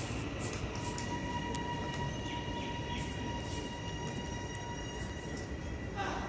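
An approaching suburban electric train: a steady low rumble with a thin, steady high whine over it.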